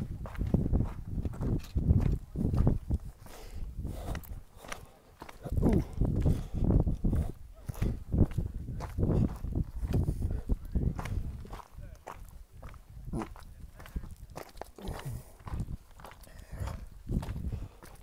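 Footsteps on a rocky mountain trail with irregular gusts of wind rumbling on the microphone.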